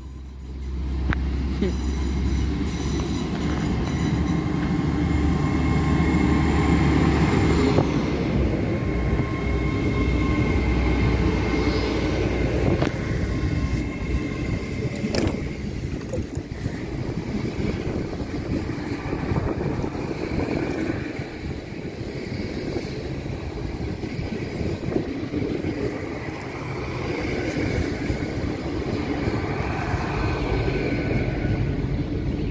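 Hitachi Class 800 bi-mode train pulling away on its underfloor diesel engines. The engines run under load with a high whine that stops about eight seconds in. Steady running and wheel noise follow as the carriages roll past.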